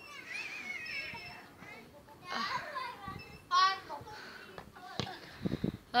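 Children's voices calling out in short high-pitched bursts, with a single sharp knock about five seconds in.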